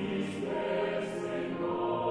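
Mixed SATB choir (sopranos, altos, tenors and basses) singing held chords in harmony, with brief hissing consonants about a third of a second and a second in.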